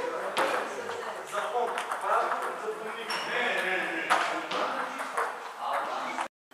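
Table tennis balls clicking against bats and tables in a large hall, many quick sharp ticks at an irregular rhythm, with players' voices in the background.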